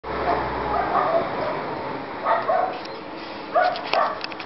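A dog barking several times in short, separate barks spread through the few seconds.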